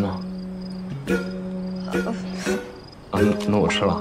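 Crickets chirping steadily over soft background music that holds a low, sustained note.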